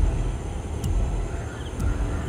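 Outdoor ambience dominated by an uneven low rumble of wind on the microphone, with a few faint high chirps.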